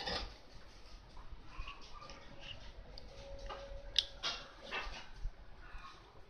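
Light clicks and rustles of a CRT television's flyback transformer and its wires being handled, with one sharper click about four seconds in. A faint steady thin whine sits underneath from about three seconds in.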